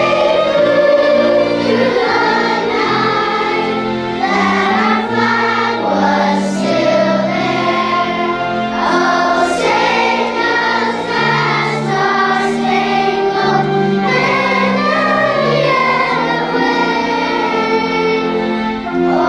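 A choir of first-grade children singing together in sustained, held notes.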